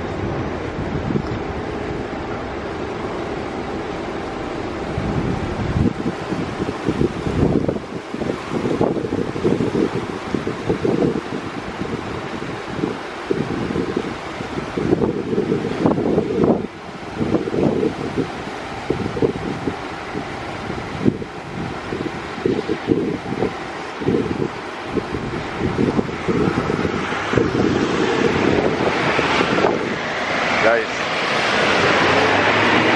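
Wind buffeting the camera's microphone: a low rushing noise that swells and drops in uneven gusts.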